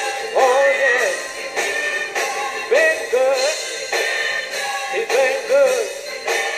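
A man singing gospel with wordless, melismatic runs, his held notes bending up and down, over live instrumental accompaniment with a steady beat.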